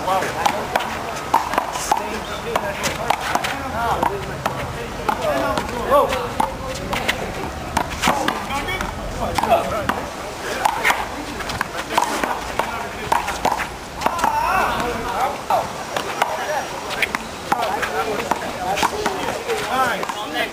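A one-wall handball rally: irregular sharp smacks of a hand striking the small blue rubber ball and the ball hitting the concrete wall and court. Voices talk and call out throughout.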